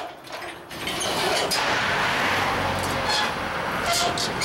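Road traffic passing close by: from about a second in, a steady rush of tyres and engine rumble swells as a vehicle goes past, with a few light clicks on top.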